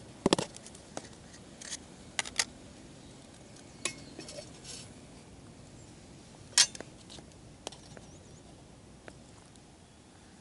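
Metal camp cookware being handled: scattered sharp clinks and knocks as a metal mug, a lid and a tub are picked up and set down on the camp table. The loudest knock comes about six and a half seconds in.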